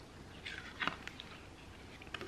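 A cardboard board-book page turned by hand: a soft brush of card with a light tap a little under a second in, then a few small ticks.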